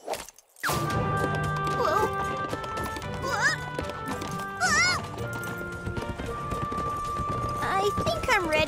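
Galloping horses' hooves clip-clopping under upbeat cartoon background music, with a few short wavering cries over it. It starts after a brief hush at the very beginning.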